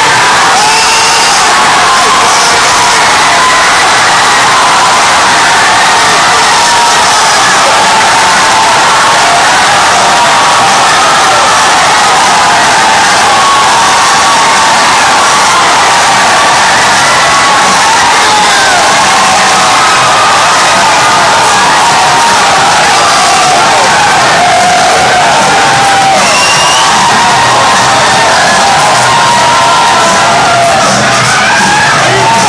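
A packed bar crowd cheering and screaming nonstop at a championship-winning goal, many voices at once, very loud and unbroken throughout.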